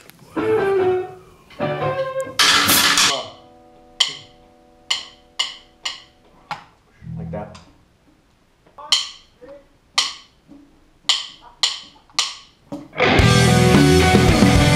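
A rock band warming up in the studio: a cymbal crash, a guitar chord left ringing, then a scattering of sharp clicks from the drum kit. Near the end the full band of drums, electric guitars and bass comes in loud.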